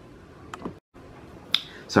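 Quiet room tone broken by a few short clicks, the sharpest about one and a half seconds in, with a moment of dead silence near the middle.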